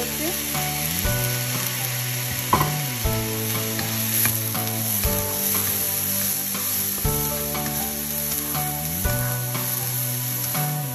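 Chopped onion, capsicum and tomato sizzling in hot oil in a frying pan while they are stirred with a wooden spatula. Soft background music with slow, held chords plays underneath.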